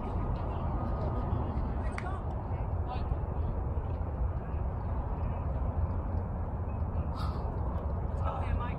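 Steady low outdoor background rumble, with a few short, faint shouts from players about two and three seconds in.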